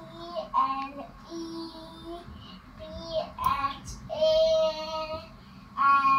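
A young child's voice singing drawn-out syllables in several short phrases, with long held notes, the longest about four seconds in. A faint steady high tone runs underneath.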